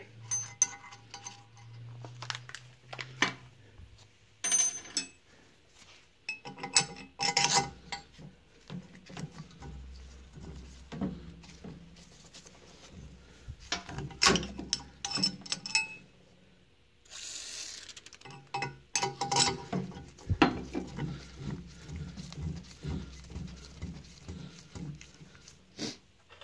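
Steel parts clinking and tapping against a cast-iron small-block Chevy cylinder head as a hardened exhaust valve seat is set in place and a steel pilot rod is worked into the valve guide, in irregular sharp clicks.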